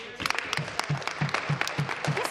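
Legislators applauding in a large chamber, with one nearby set of claps standing out at about six a second.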